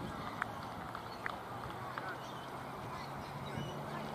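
Open-air ambience of a cricket ground: steady background noise with a few short, high chirps and faint distant voices over a low hum that rises slightly in pitch in the second half.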